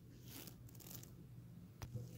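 Near silence: room tone with a faint steady low hum and one small click near the end.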